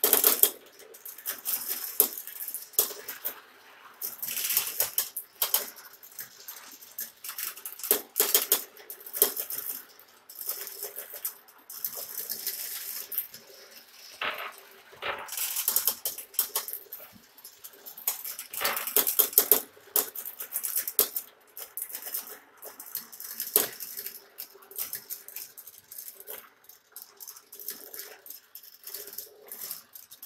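Many marbles rolling down a plastic GraviTrax marble-run tower and its rails, clicking and clattering against the track pieces and against each other in a long run of rattling bursts. The loudest clatter comes right at the start, as a handful of marbles is let go at the top.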